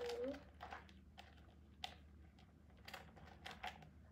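Faint scattered clicks and rustles of hands working the key ring holder loose from a small black leather Gucci Dionysus super mini bag.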